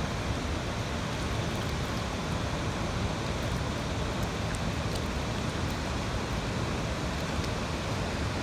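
Steady rush of fast river current flowing over rocks.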